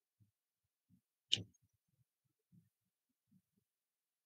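A single sharp computer-mouse click about a second in, over near silence with a few faint low thuds.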